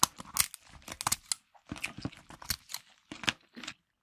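Shell of a whole cooked lobster being cut with kitchen shears and cracked apart: an irregular run of sharp snips, crunches and cracks, several a second.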